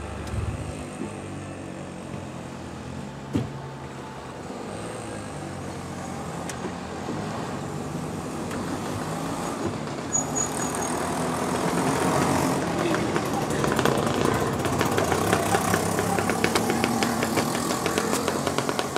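Three-wheeler (auto-rickshaw) engine running, getting steadily louder, with a rapid even ticking in the second half.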